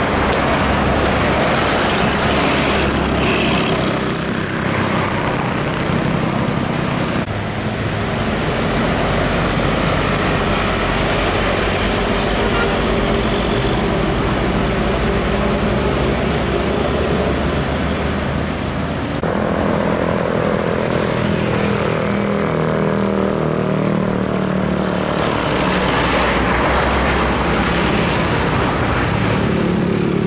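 Diesel engines of large intercity coaches running loudly under load as they pass close by on a climbing road. The sound changes abruptly about 7 and 19 seconds in, where one passing bus gives way to the next.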